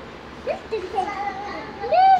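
Young children's high-pitched voices, calling and vocalising without clear words: a short rising call about half a second in, then a long held note that swells into a louder rising call near the end.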